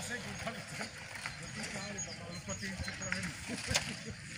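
Indistinct talk of women and small children nearby, no clear words. A sharp click comes near the end.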